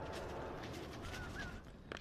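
Faint outdoor background with two short bird chirps about a second in, and a single sharp click near the end.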